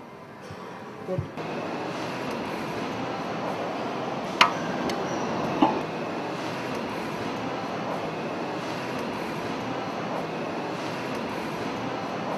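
A steady, even noise that starts about a second in, with two sharp metallic clicks about a second apart near the middle. The clicks come as the hydraulic stud-tensioning cylinder is set over a cylinder head nut.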